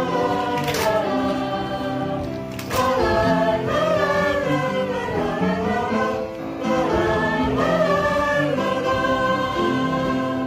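A mixed choir of adults and children singing a wordless "la la la" refrain together, over a musical accompaniment with held notes.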